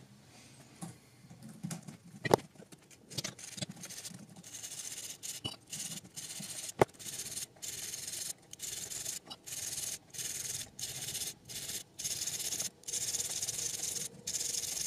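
A thin metal tool scraping against a small glass tube in short, repeated strokes, about two a second, starting about five seconds in. Two sharp clicks come before and just as the scraping begins.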